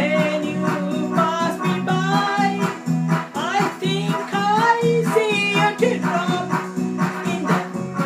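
A woman singing a pop tune over electronic keyboard accompaniment with a steady beat.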